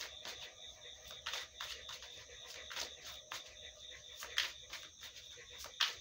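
A deck of oracle cards being shuffled by hand: irregular quick clicks and flicks of cards against each other. A faint steady high tone runs underneath.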